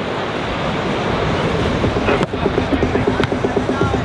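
Wind rumbling on the microphone, with music from a PA coming in about a second and a half in on a fast, even beat. Two sharp slaps about a second apart as the volleyball is served and then played.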